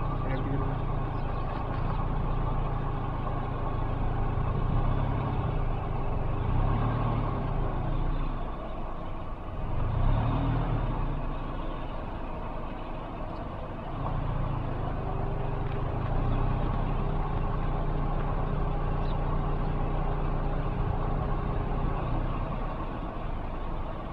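A motor vehicle's engine idling steadily with a low hum; the hum fades out for a few seconds about a third of the way in and returns after the middle.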